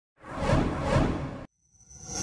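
Logo-intro whoosh sound effect that swells twice and cuts off abruptly about a second and a half in. It is followed by a bright, ringing chime-like tone that builds up near the end.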